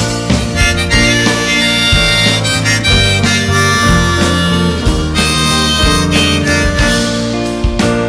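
Live band playing an instrumental break: a harmonica in a neck rack leads, over keyboard, bass guitar and drums.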